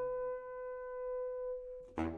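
Baritone saxophone (Selmer Super Action 80 Series II) holding a steady high note for nearly two seconds while the tail of a low note fades under it. A sharp low note is attacked right at the end, part of the piece's alternating low and high pattern.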